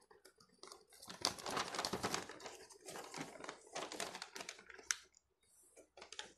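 Gift-wrapping paper on a boxed present crinkling and rustling in irregular crackly bursts as the present is handled, with one sharp click near the end.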